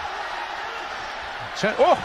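Steady stadium crowd noise from a large football crowd, with a male commentator's sharp rising "Oh!" near the end as a goal chance goes close.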